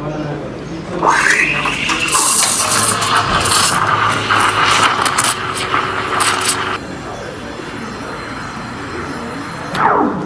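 Espresso machine steam wand steaming milk in a stainless steel pitcher. About a second in it opens with a rising squeal into a loud hiss full of quick chirping ticks, the sound of the tip drawing air into the milk to foam it. Near seven seconds it drops to a quieter steady hiss as the milk is textured, and it ends with a falling squeal.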